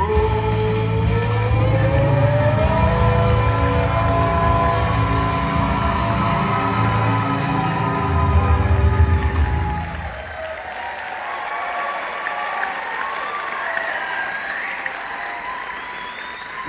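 Live rock and roll band (grand piano, electric guitar and drum kit) playing the closing bars of a song, with a long held note, until the music stops about ten seconds in. Then the audience applauds.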